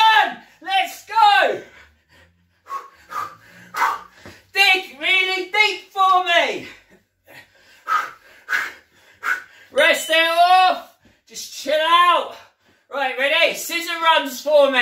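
A man's loud wordless vocal exhalations and grunts in quick bursts, with sharp breaths in between, as he throws punches and elbows while out of breath.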